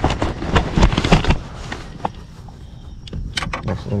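Rustling and knocking close to the microphone as the wearer moves about on the boat deck, loudest in the first second and a half. A few sharp clicks come near the end.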